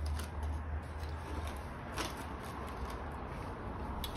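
Steady low background hum with a faint click about two seconds in.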